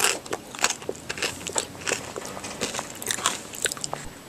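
Close-up mouth noises: an irregular run of wet clicks and crunches, like chewing right at the microphone.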